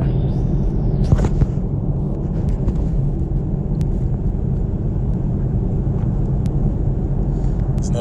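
A steady low rumble, with a few faint clicks over it.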